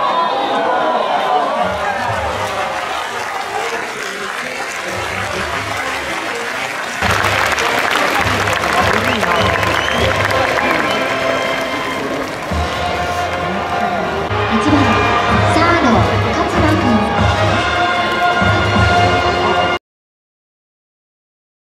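Ballpark crowd sound: voices and cheering with music playing over them. It jumps louder about seven seconds in and cuts off just before the end.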